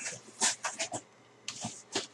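Cardboard box being handled, its flaps scraping and rustling in two short bursts of brushing sounds.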